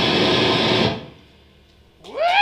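Grindcore band playing live, distorted electric guitar and drums at full volume, stopping dead about a second in with a short fading ring.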